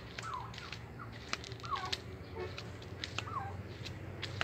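A bird calling faintly three times, each a short falling call, with scattered light clicks in between.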